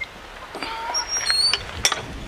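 Birds calling: a few short, high whistled chirps about a second in, then a sharp click near the end.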